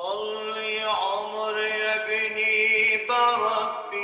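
Male tarab singer holding a long sung vowel in mawal style, the note wavering in ornamented turns, then stepping to a new pitch about three seconds in.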